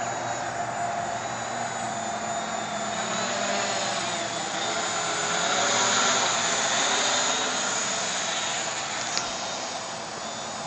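660 Scarab quadcopter's four electric motors and propellers buzzing in flight, the pitch shifting as the motors change speed. It grows louder as the quad passes close about halfway through, then fades, with a brief click near the end.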